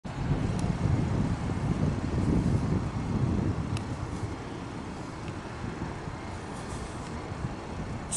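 Outdoor background noise: a low rumble, uneven and louder for the first few seconds, then steadier and quieter, with a couple of faint clicks.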